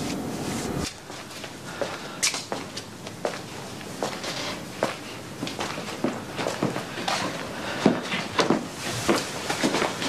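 Footsteps on a hard floor, about two a second, sharp and uneven. They follow a steady background hum that cuts off about a second in.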